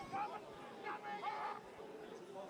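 Faint voices calling twice, over a low, steady crowd-and-ground ambience.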